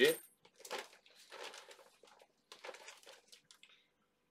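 Small plastic parts bag crinkling as it is handled and opened, in several short, irregular rustles.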